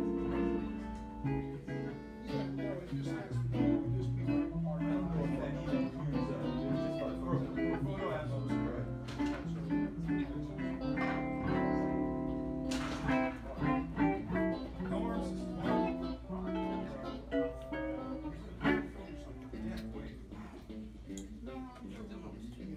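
Guitar being played: a run of picked notes and strummed chords.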